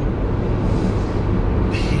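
Steady road and engine noise inside a car cabin while driving on a freeway, a constant low rumble with no breaks.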